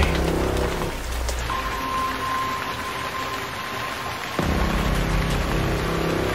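Steady rain hiss under a low musical drone. The drone drops away about a second in and comes back near the end, while a thin high tone is held through the middle.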